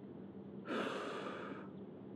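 A person's single sharp, breathy exhale, like a huff of effort, lasting about a second and cut off abruptly, over a steady low background hum.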